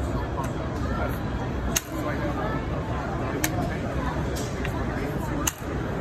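Four sharp mechanical clicks from a prototype air rifle's action as it is worked while shouldered. They come at uneven intervals, the second and the last the loudest, over the chatter of a crowded hall.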